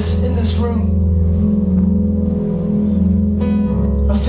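Soft live worship music: long held chords that sound steadily underneath, with acoustic guitar, and a man's voice over a microphone.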